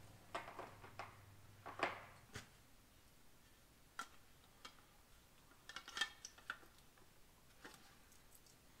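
Faint handling noises: scattered light clicks and knocks as the camera and small parts are handled, with a brushing scrape near two seconds in. A low hum stops suddenly just after two seconds.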